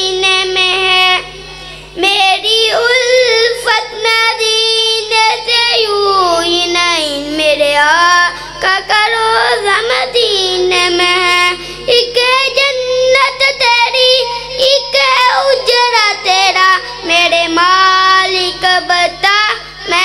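A boy singing a naat, an Urdu devotional poem in praise of the Prophet, solo and unaccompanied into a microphone, in long, wavering melodic lines broken only by short breaths.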